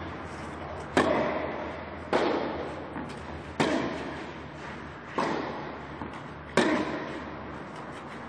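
A tennis rally: about five sharp racket strikes on the ball, roughly a second and a half apart, each echoing under the roof of the covered court. Fainter knocks of the ball bouncing fall between them.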